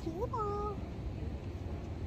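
A baby's brief high-pitched vocal squeal, one short call that rises and then falls in pitch, lasting about half a second near the start.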